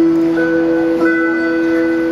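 Live acoustic guitar and voice performance: a long sung note held steady over acoustic guitar.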